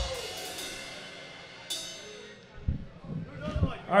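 Drum-kit cymbals ringing out and fading after a hit, then a second cymbal crash a little under two seconds in that also rings down. A few low drum thumps and voices come near the end.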